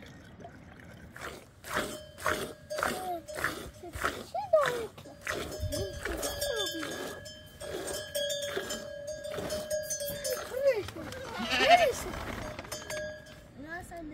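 A sheep being milked by hand into a metal pot: milk streams hiss into the pot in an even rhythm of about two squirts a second. Short sheep bleats come now and then, the loudest near the end.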